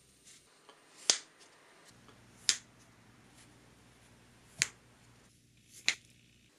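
Four sharp clicks, spaced unevenly a second or two apart, from hand work on cork grip rings held on a slim rod as their bores are reamed and fitted.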